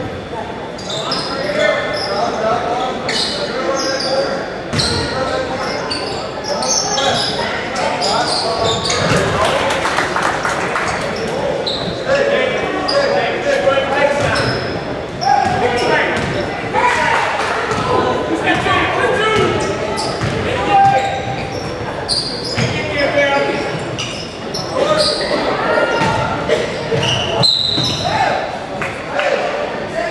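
Basketball game sounds in a large, echoing gym: a basketball dribbling and bouncing on the hardwood court among players' and spectators' indistinct shouts and calls.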